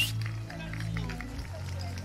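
Quiet background of low, steady music with faint voices of people in the crowd, between announcements.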